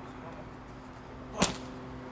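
One sharp smack of a boxing glove punching a thick handheld kick pad, about one and a half seconds in.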